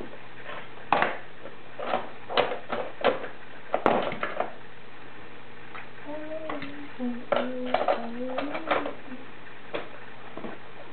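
Hard plastic toys clacking and knocking against each other in scattered sharp clicks. Between about six and nine seconds a young child makes a drawn-out, wavering vocal sound.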